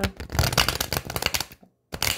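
Tarot deck being riffle-shuffled by hand: a rapid flutter of cards snapping off the thumbs and interleaving, stopping about one and a half seconds in.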